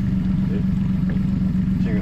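A small fishing boat's outboard motor running steadily at idle: an even, low engine drone with one steady pitched hum.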